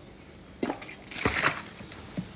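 Thin plastic water bottle crackling as it is squeezed while someone drinks from it, a few sharp crackles.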